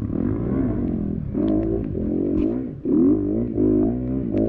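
Off-road dirt bike engine revving up and down in repeated bursts of throttle, loudest about three seconds in, with a few knocks from the bike working through mud.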